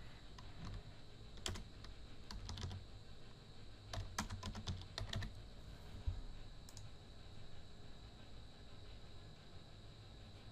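Faint typing on a computer keyboard: a handful of separate keystrokes spread over the first several seconds, as a short two-word title is typed.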